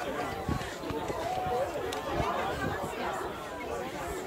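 Several people chatting at once, overlapping voices with no single clear speaker.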